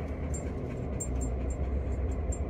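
Car driving slowly, heard from inside the cabin: a steady low rumble of road and engine noise with a few faint light ticks.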